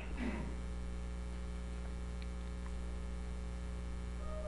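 Steady low electrical mains hum, a buzz made of several even tones that holds unchanged throughout.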